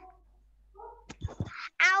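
A few soft knocks about a second in, then a child's high voice rises into a sing-song chant of a Sinhala sentence near the end.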